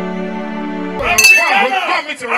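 A sustained synthesized chord from a channel intro jingle, which cuts off abruptly about halfway through. A bright metallic clink of small brass hand cymbals follows, then men's loud, excited voices.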